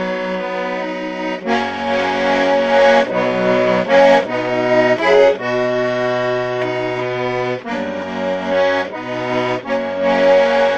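Accordion playing a traditional-style tune: a melody over sustained chords, with the bass note changing every second or so.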